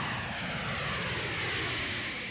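A loud, steady rush of noise with slowly falling sweeping tones, like an aircraft passing overhead.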